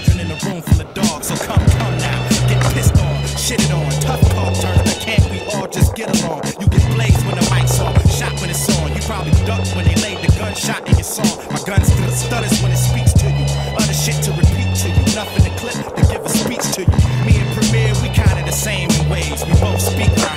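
Hip hop beat with a looping deep bass line and no vocals, over the sound of skateboard wheels rolling on concrete and sharp clacks of the board.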